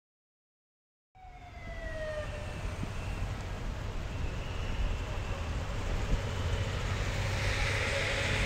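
Busy street ambience: traffic rumble with wind buffeting the microphone, starting after about a second of silence. As the sound comes in, a short falling tone, like the tail of a siren, dies away.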